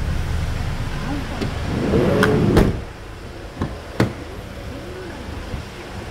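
A Hyundai Starex van's door shutting with a loud thump about two and a half seconds in, after which the background rumble drops. About a second later come two sharp clicks like a door latch being worked. Voices murmur faintly in the background.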